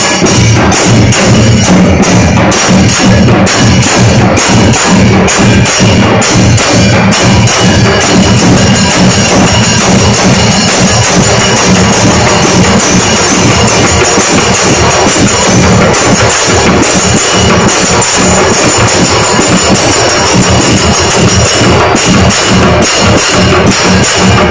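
Ensemble of shoulder-slung barrel drums beaten with hand and stick, with small brass hand cymbals clashing along, playing a loud, dense, unbroken rhythm.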